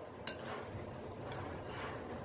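A spoon clinks once against a glass mixing bowl about a quarter second in, then stirs quietly through an oil-and-vinegar dressing thick with seeds.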